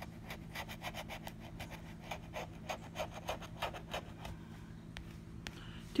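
Scratch-off lottery ticket being scratched with a metal tool: rapid short scrapes, several a second, that thin out about four and a half seconds in.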